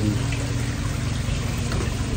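Koi pond water running in a steady rush, with a low steady hum underneath.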